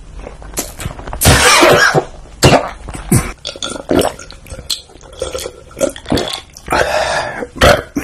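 A man burping loudly and close to the microphone, first a long burp about a second in, with shorter mouth and throat sounds after it and another loud stretch near the end.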